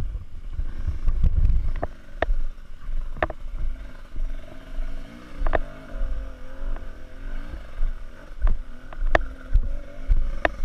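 Dirt bike engine running at low, varying revs under a steady low rumble, with sharp knocks and clatter from the bike over rough trail. The engine note is clearest and wavers in pitch through the middle of the stretch.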